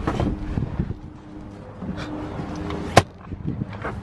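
Car running, heard from inside the cabin: a steady low hum with a faint steady tone, and one sharp click about three seconds in.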